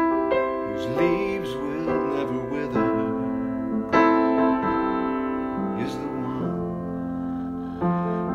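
Electric keyboard playing sustained piano chords in a slow, gentle song accompaniment between sung lines, with a new chord struck every second or two and the strongest one about halfway through.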